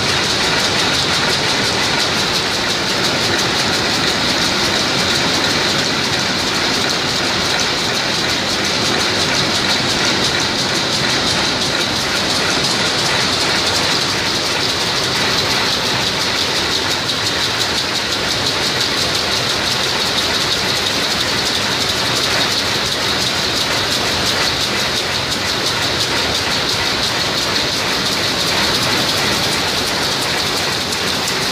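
Rapier loom with an electronic Jacquard running at speed while weaving, a loud, steady, rapid mechanical clatter of the beat-up and rapier drive that never lets up.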